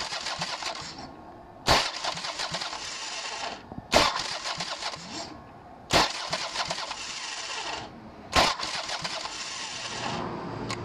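Motorcycle starter motor cranking the engine in four short bursts, each opening with a loud clunk as the starter engages and running about two seconds before stopping. The starter is a new Spike high-torque unit.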